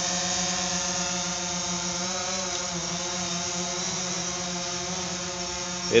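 DJI Phantom 4 Pro quadcopter's propellers buzzing steadily as it hovers and creeps forward a few feet off the ground. The pitch wavers briefly in the middle.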